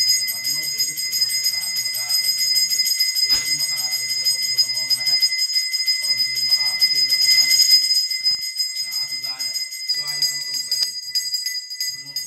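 Brass pooja hand bell rung rapidly and continuously, a clear high ring, over a voice chanting. Near the end the ringing slows into separate strokes.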